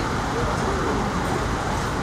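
Steady noise of convoy vehicles with people talking indistinctly.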